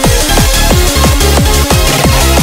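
Loud, fast techcore/future-core electronic music at 180 BPM: rapid drum hits that drop steeply in pitch, repeating several times a second over a steady bass and synth notes.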